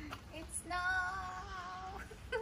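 A woman's voice singing one held, slightly wavering note, starting a little under halfway in.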